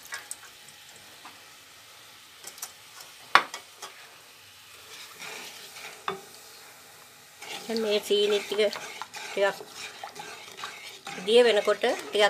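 Sugar and water heating in a non-stick wok, stirred and scraped with a wooden spoon: a faint sizzle with a sharp knock about three seconds in and a smaller one a few seconds later. A voice speaks over the stirring in the second half.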